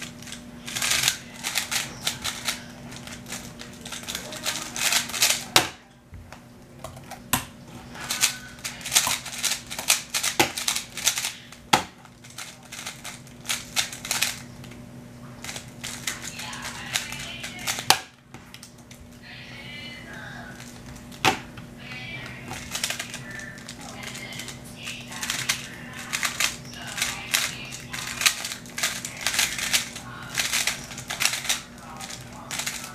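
A 3x3 speedcube being turned fast in hand during timed solves: rapid runs of plastic clicking turns, broken by short pauses and a few sharper single knocks.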